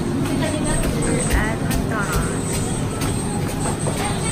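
Busy fast-food restaurant ambience: a steady din of indistinct chatter and kitchen noise with music, and a few short chirping sounds about halfway through.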